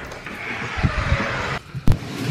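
A large cardboard box scraping and rubbing as it is handled and moved through a doorway, with a few dull bumps, then one sharp knock near the end.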